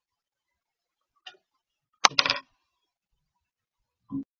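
A quick run of sharp clicks about two seconds in, the first the loudest, with a fainter short click a second earlier; otherwise silence.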